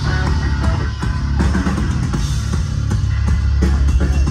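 Live hard rock band playing at full volume: electric guitars, bass guitar and a driving drum kit with a steady beat.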